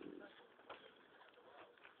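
Newborn puppies nursing, making soft cooing grunts: a low warbling coo fades out at the start, then faint squeaks and a small click.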